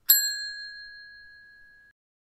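A counter service bell struck once, ringing with a clear tone that fades out over almost two seconds.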